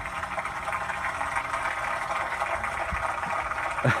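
Steady background noise, a low rumble under an even hiss, with no distinct events, and a short laugh right at the end.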